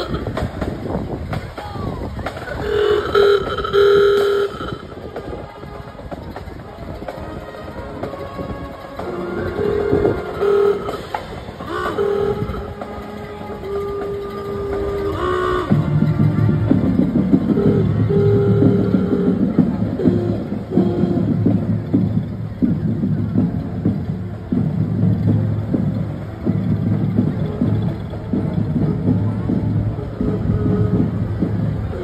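Street parade going by: several held, horn-like tones sound in the first half. About halfway through, music with a steady beat takes over.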